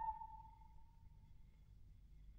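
A solo soprano's held high note with vibrato dies away over the first second and a half, leaving near silence with only a faint low hum.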